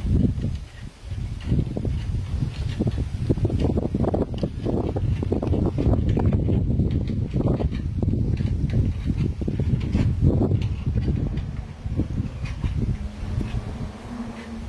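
Wind buffeting the microphone in an irregular low rumble, with faint scattered clicks of a North American porcupine gnawing at a wooden board.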